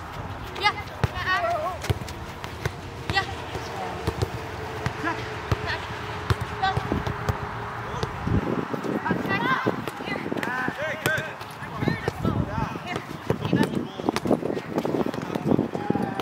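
Soccer balls being kicked and passed on artificial turf, with repeated sharp thuds of ball contact. Players' running footsteps and voices calling across the field can be heard alongside.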